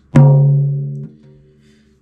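Tom drum with a coated batter head struck once in the centre with a felt mallet, ringing out at its low fundamental note of about 142 Hz, its starting tuning, and decaying. The ring drops off sharply about a second in and then fades.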